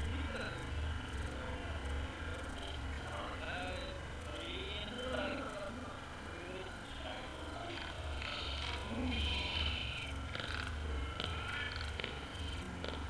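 Wind rumbling on the microphone of a camera left at the pitch edge, swelling in gusts. Faint distant shouts from players carry across the field, most clearly around the middle and again near the end.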